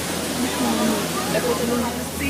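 Steady rushing roar of a waterfall, with faint voices heard over it.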